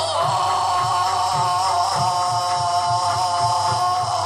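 Yakshagana accompaniment music: one long, slightly wavering held note, sung or played, over a steady drone, with soft regular drum strokes underneath.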